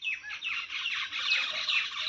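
Small birds chirping: a quick, overlapping run of short, high-pitched chirps, each sliding downward in pitch.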